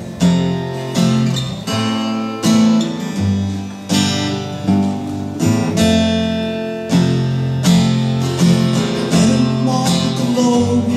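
Acoustic guitar strumming chords in a folk song's instrumental introduction, with strong strokes about once a second.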